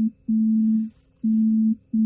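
Incoming phone call ringing through a Tesla Model Y's cabin speakers: a low, steady electronic tone that pulses on and off, about half a second on and a short gap between, about three pulses.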